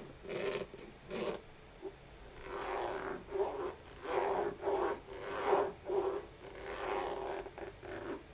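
Fingernails scratching and rubbing over the side of a black heeled ankle boot, close to the microphone. It comes as a run of short scratching strokes: a few spaced ones at first, then many in quick succession from about two and a half seconds in.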